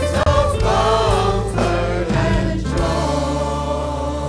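Mixed choir singing a Christmas carol with accompaniment; about two-thirds of the way through, the voices settle onto a held chord that slowly fades.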